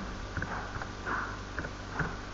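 A few soft computer-keyboard key clicks from typing, with a faint breath or sniff near the microphone about a second in, over a low steady electrical hum.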